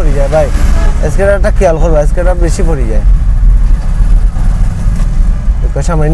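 Steady low rumble of a car's engine and road noise heard from inside the cabin as it moves slowly through traffic, with a man speaking over it for the first half.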